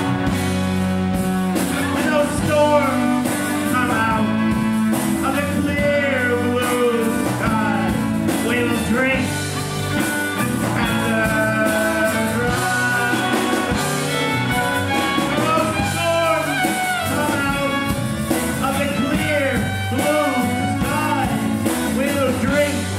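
Live blues-rock band playing an instrumental break: a harmonica, cupped to a hand-held microphone, plays bending, sliding notes over fiddle, electric guitars and drums.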